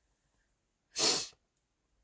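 A person sneezes once, a short sharp burst about a second in.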